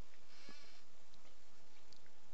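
Steady room noise with a low hum and no clear event; a faint, brief higher sound and a soft click come about half a second in.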